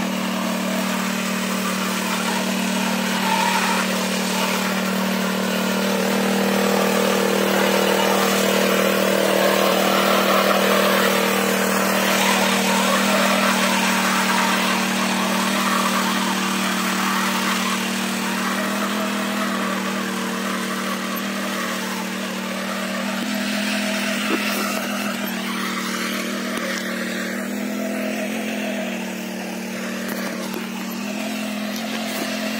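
Single-wheel engine-powered mini weeder running steadily under load as it tills the soil, a constant engine drone that swells slightly in the middle.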